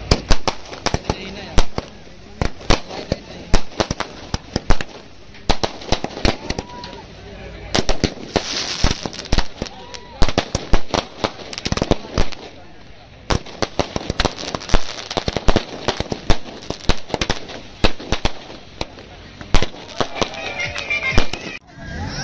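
Firecrackers going off in a long, irregular run of sharp bangs, several a second, with a brief lull about halfway through.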